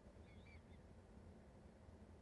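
Near silence: faint low room hum, with a few very faint short chirps about half a second in.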